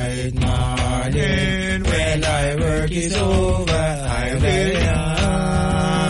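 A Rastafari chant sung without words being spoken, the voices sliding between held notes, with a hand-drummed beat struck on a desk.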